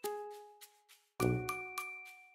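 Light background music of bell-like struck notes, each ringing and fading away; a short gap about a second in, then a new chord of notes.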